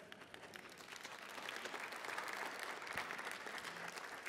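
Congregation applauding, many hands clapping, fairly faint, swelling over the first couple of seconds and then holding steady.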